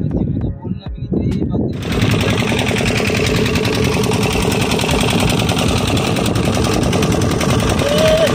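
Fishing boat's inboard engine running under way with a fast, even pulsing beat, which cuts in suddenly about two seconds in; before that, a low rumble with a sharp click.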